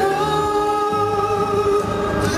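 Male singer holding one long, steady note live into a microphone, with a band's accompaniment and bass line underneath.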